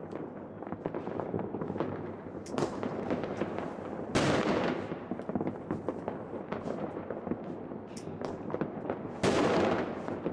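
New Year's Eve fireworks and firecrackers going off in a continuous scatter of pops and bangs, with two louder blasts, one about four seconds in and one near the end.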